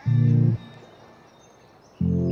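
Song backing between sung lines: a short low held note about half a second long, then a quiet gap with faint high chirps, and another low note starting at the very end.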